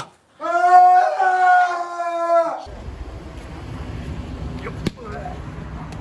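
A person's long drawn-out yell, held for about two seconds and falling slightly in pitch. It is followed by steady street noise with a low rumble and a single sharp knock near the end.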